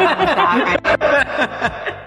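People laughing, with breathy chuckles running through the whole moment.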